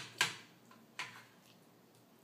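Sharp taps: one at the very start, a louder one a moment after, and another about a second in.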